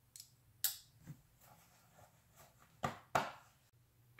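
A few faint, sharp clicks and knocks from handling a folding knife, with a faint steady low hum underneath.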